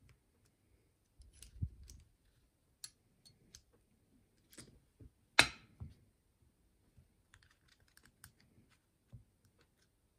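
Small irregular metal clicks and taps from a DOM euro lock cylinder being taken apart by hand with a small screwdriver and a plug follower, with one sharper click about five and a half seconds in.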